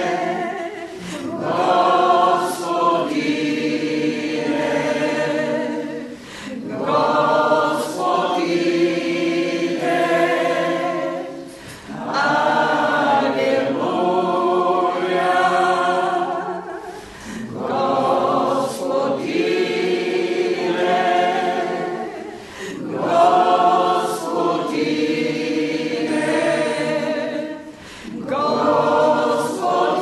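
A church congregation singing together in long, sustained phrases, each lasting about five seconds and broken by a short pause for breath.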